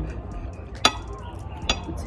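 Metal knife and fork clinking against a ceramic plate while cutting food: two sharp clinks, one just under a second in and another near the end.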